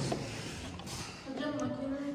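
A couple of light metal clicks as the crank of a milling machine's dividing head is handled, then a man's drawn-out hesitant "eee" starting a little past halfway.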